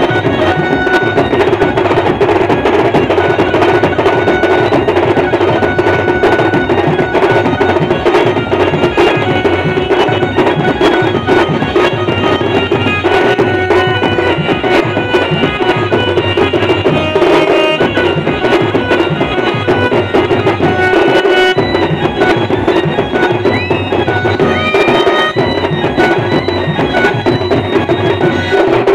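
Adivasi folk band playing dance music: a held, sustained melody line over steady drums and percussion, continuous and loud.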